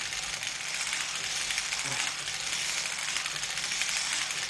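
NZAK hand-cranked circular sock knitting machine being turned, its cylinder and ribber needles clicking in a steady, rapid metallic clatter as it knits ribbing.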